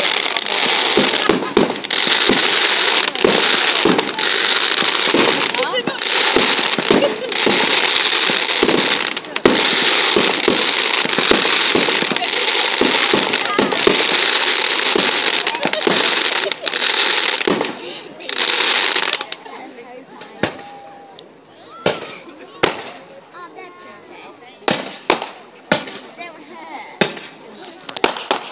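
Fireworks display at full barrage: a continuous dense crackling, shot through with many sharp bangs. About three-quarters of the way through the crackle stops suddenly, and only scattered single bangs remain.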